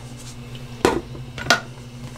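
Two sharp plastic clicks less than a second apart from a Paterson film-developing tank and its lid being handled, over a steady low hum.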